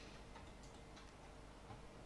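Near silence: room tone with a few faint ticks.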